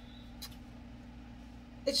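Steady low hum of a room air conditioner running in the background, with one faint click about half a second in.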